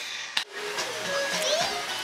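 Steady rush of water from a bubbling hot tub, with faint voices and music under it. A brief click about half a second in.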